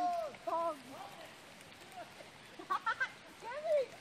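Steady faint hiss of light rain, broken by a few short snatches of voice.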